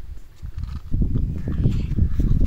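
Footsteps over dry grass and dirt, with rumbling handling noise on a handheld phone microphone carried while walking; the rumble grows louder about a second in.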